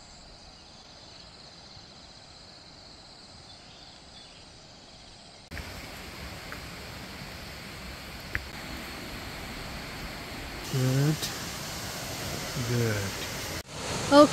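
Tropical rainforest ambience: first a faint, steady, high-pitched insect buzz, then after a sudden cut a louder even outdoor hiss. Two short human voice sounds come near the end.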